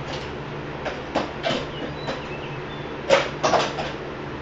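A string of short, sharp metal knocks and clicks from a manual wheelchair being handled, scattered through the first two seconds and loudest in a quick cluster about three seconds in, over a steady low hum.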